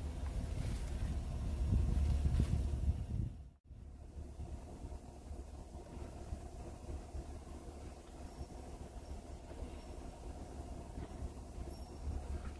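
Low steady background rumble. It cuts out abruptly a few seconds in, then carries on quieter.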